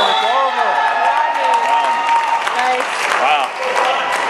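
Dodgeball players shouting and cheering, with clapping, as the match ends. A steady tone runs for about the first two seconds.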